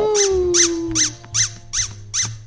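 A squeaky toy penguin's squeaker being squeezed about five times in a steady rhythm, two or three squeaks a second, each dipping and then rising back in pitch. The squeaker is newly replaced and working again.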